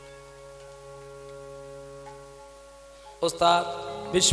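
Devotional kirtan music: a quiet held instrumental chord sustains, then about three seconds in the singer's voice enters loudly with a sung phrase.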